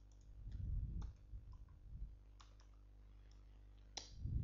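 Computer keyboard keys clicking a few times as code is typed, with a sharper click at the very end. A louder low, muffled rumble runs from about half a second to two seconds in.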